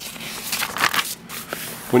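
A picture book's paper page being turned by hand: a quick run of rustling and crinkling.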